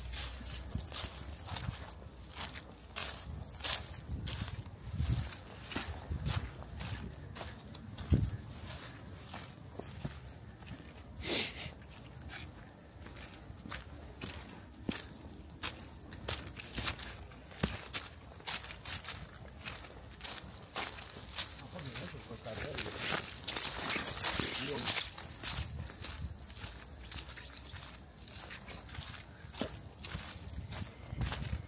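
Footsteps crunching through dry fallen leaves on a woodland floor at a steady walking pace.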